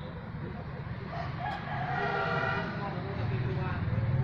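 A single drawn-out pitched call lasting about two seconds, over a low steady hum that grows louder near the end.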